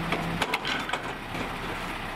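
Bulky waste clattering in the hopper of a McNeilus rear-loader garbage truck: a string of sharp knocks and cracks of wood and debris. A steady hum from the truck stops about half a second in.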